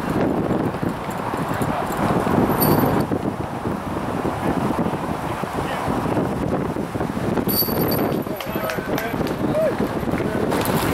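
Strong gusty wind buffeting the microphone: a loud, uneven rumbling hiss that rises and falls with the gusts.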